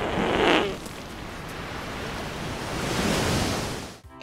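Film sound effect of a corpse farting: a wavering, buzzing fart strongest about half a second in, followed by a steady rushing noise that swells near the end and stops suddenly.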